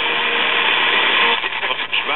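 1939 Zenith 4K331 battery tube radio giving out steady AM static as its dial is tuned between stations, with faint fragments of a broadcast breaking through in the second half.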